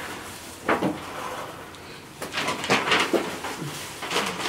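Knife cutting and scraping through a raw pork leg on a wooden table, heard as a few short knocks and scrapes, one about a second in and a cluster between two and three seconds in.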